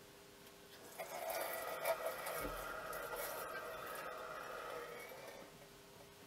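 Water running from a kitchen tap into the sink, starting suddenly about a second in and easing off near the end.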